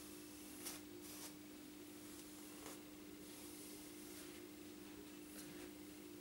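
Faint, irregular swishes of a plastic comb drawn through long hair, a handful of soft strokes, over a steady low hum.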